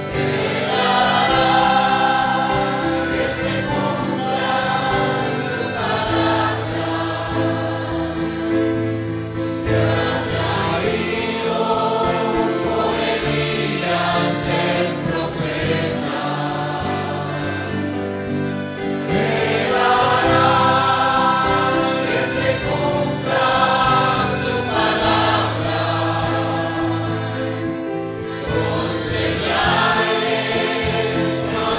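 A congregation singing a worship chorus together, loud and continuous.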